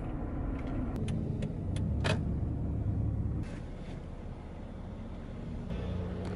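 Car heard from inside the cabin, rolling slowly with a steady low engine and road rumble, with a few light clicks in the first two seconds.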